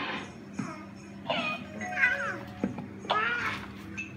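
A baby's high-pitched squealing babble: three short sliding squeals over music playing in the background.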